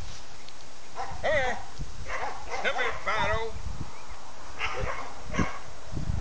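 Border collie puppies yipping and whining: short, high, wavering calls in two clusters in the first half, then two brief yips near the end.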